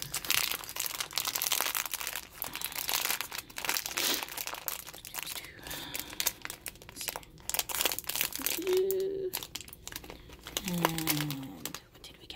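Shiny plastic blind-bag wrapper crinkling continuously as it is handled and pulled open by hand.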